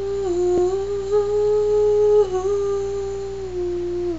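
A woman humming a cappella, holding one long note that dips briefly about two seconds in and settles a little lower near the end.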